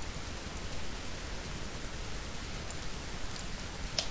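Steady hiss of the microphone and recording noise floor, with a few faint mouse clicks in the second half and a sharper click at the end.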